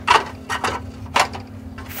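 A few light, irregular metallic clicks and taps as the perforated metal Faraday cage of an amplifier is handled, with a steady low hum underneath.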